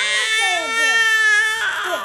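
Baby crying: a long, high wail that breaks off about one and a half seconds in.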